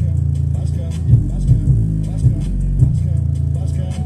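Hip-hop track with a heavy, sustained bass line and repeated punchy kick hits, played loud through a small 4-inch woofer whose cone is pumping hard in a bass test.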